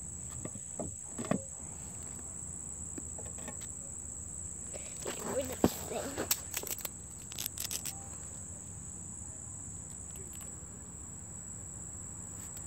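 A steady, high-pitched insect drone runs throughout, with brief rustles and knocks around the middle as boot laces are handled.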